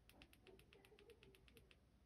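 Folomov EDC C1 flashlight's tail switch pressed rapidly over and over, a fast run of faint clicks lasting about a second and a half. The presses switch the light between its tactical and illumination modes.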